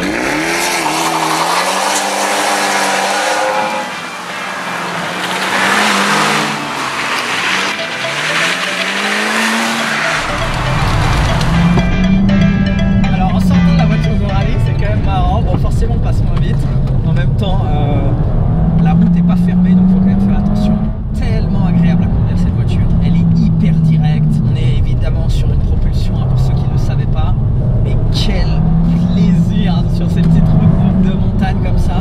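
Abarth 124 GT's turbocharged four-cylinder engine and quad exhaust revving hard, pitch rising and falling through the gears under a loud rushing noise as the car is driven off hard. From about ten seconds in, the same engine is heard muffled from inside the cabin, its pitch swelling and dropping with each gear.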